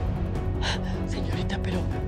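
Dramatic background music holding sustained low notes, with a woman's sharp gasp a little under a second in.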